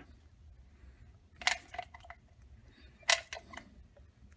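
Two short, sharp clicks over near quiet, about a second and a half apart, from a plastic tube of silicone caulk being squeezed out by hand.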